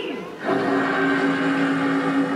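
A steady held low chord over a hiss, through the show's loudspeakers. It comes in about half a second in and holds for about a second and a half.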